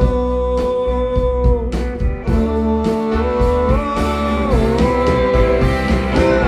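Live band music: electric guitars, bass and drums, with a long held melody line that bends up and back down about four seconds in.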